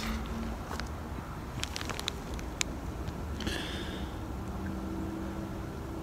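Handling noise from a kraft paper pouch of loose herbal tea: a few light clicks and a brief rustle over a low steady rumble.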